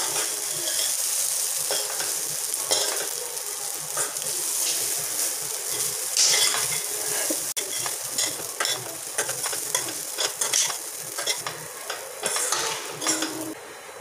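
A steel spoon stirs and tosses idiyappam with vegetables in a stainless steel kadai over the flame. There is a steady frying sizzle, with scattered clicks and scrapes where the spoon strikes the pan.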